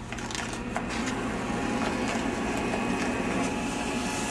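Printed transfer paper being slid by hand into a Roland GX-24 vinyl cutter and under its pinch rollers, with a few light clicks in the first second over a steady low hum.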